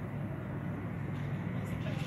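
A steady low hum with faint background voices, typical of an airport terminal lounge's room tone.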